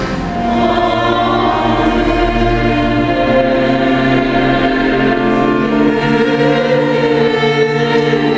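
A small choir singing with a string ensemble of violins and a cello, in long held notes.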